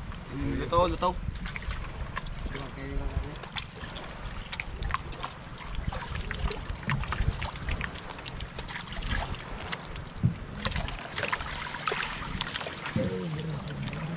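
Water splashing and sloshing as a net full of small fish is hauled by hand in shallow water, the trapped fish thrashing at the surface in many short splashes, with a low rumble underneath.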